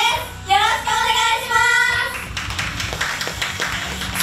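Young girls singing a last held line of an idol pop song together over a backing track. About two seconds in the singing stops and hand clapping follows.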